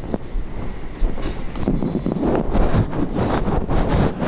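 Marker pen writing on a whiteboard, an irregular run of scratching and rubbing strokes picked up close on the microphone.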